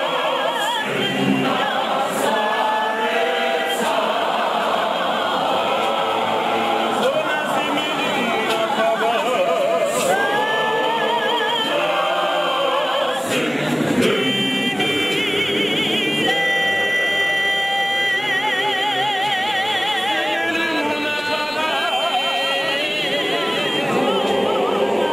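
A Zionist church choir, led by men's voices, singing a hymn together without accompaniment. In the second half the choir holds long notes with a wide, wavering vibrato, and a few brief sharp knocks sound near the start and around the middle.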